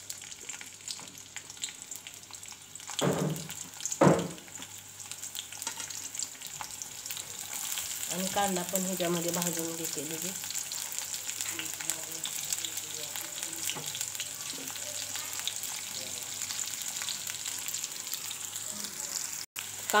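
Chopped green chillies sizzling steadily in hot oil in a metal kadhai, with two knocks about three and four seconds in. From about eight seconds the sizzle grows louder once chopped onion is in the oil.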